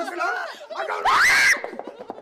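A person screams once, a short high-pitched scream about a second in that sweeps sharply upward in pitch, the loudest sound here; talking comes before it and after it.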